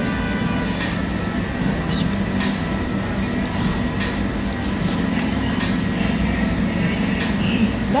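A steady low rumble and hum of background noise, with a few faint light clicks.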